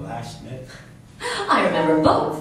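A person's voice: a short vocal phrase at the start, a brief lull, then a louder voice with held, pitched notes starting a little over a second in.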